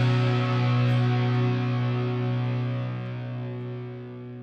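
Rock song ending on one held, distorted electric guitar chord that rings on and slowly fades out.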